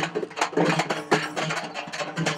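A group of large red-rimmed drums beaten with sticks and hands in a fast, uneven run of strikes, over a steady low drone.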